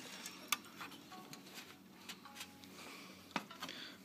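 A few faint clicks and taps, about half a second in and again near the end, from hands handling the front-panel wires inside an open computer case, over quiet room tone.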